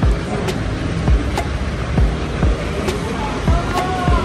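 Footsteps on a concrete walkway at an even walking pace, about two steps a second, over a steady low rumble.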